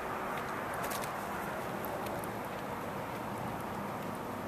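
Steady, faint outdoor background noise: an even hiss with no distinct events.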